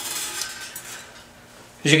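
A thin nickel anode plate being handled and shifted on a paper towel: a short rustle that dies away after about a second.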